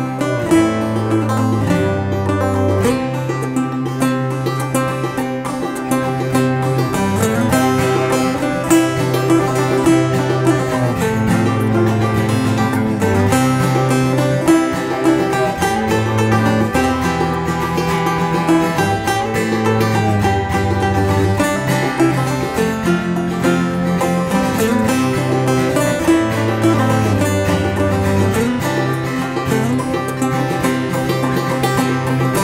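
Live acoustic trio playing an instrumental tune: five-string banjo and steel-string acoustic guitar picking quick notes over a bowed cello holding long low notes.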